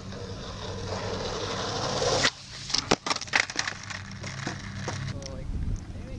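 Skateboard wheels rolling on pavement, growing louder, then cutting out abruptly about two seconds in as the board leaves the ground, followed by several sharp clacks and knocks of the board hitting the ground.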